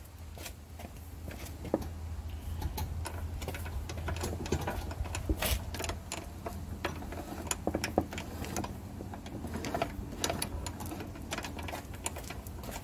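Steering gear of a Toro LX425 lawn tractor being worked by turning the steering wheel, the new pinion meshing with the stamped steel sector gear with scattered irregular clicks and ticks over a steady low hum. The freshly tightened pinion is set too tight: the steering turns, but it's really tight.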